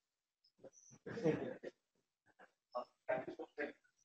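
Faint, muffled voices away from the microphone in two short spells, about a second in and again near the end, with silence between.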